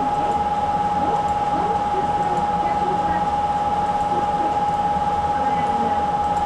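A steady high-pitched electrical whine over a low hum, with faint voices in the background.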